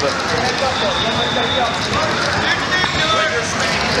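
Hubbub of many overlapping voices, with coaches and spectators calling out around the mats.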